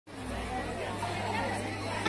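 Indistinct chatter of several voices over a low steady hum.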